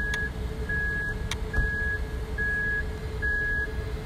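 An electronic beep repeats evenly, one high tone about once every second, each beep just under half a second long. Under it runs the steady hum of a DJI Mini 2 drone hovering a few metres away.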